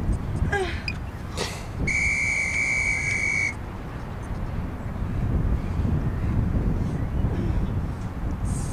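A single steady, high-pitched electronic beep about a second and a half long, starting about two seconds in, from an interval timer signalling the start of a tabata work round. Wind rumbles on the microphone throughout.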